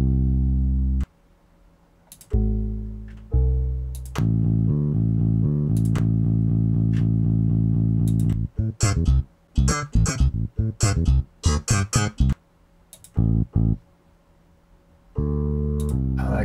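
Bass-loop samples from Code.org Project Beats' bass library previewed one after another, each a few seconds of low bass notes that cut off abruptly. A steady rhythmic bass line runs from about four to eight seconds in, followed by a choppier pattern of short, sharply attacked notes.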